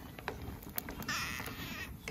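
A single harsh, caw-like animal call about a second in, lasting just under a second, over faint scattered clicks.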